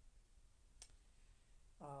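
Near silence in a small room, broken by a single short, faint click a little under a second in; a man's spoken "uh" begins just before the end.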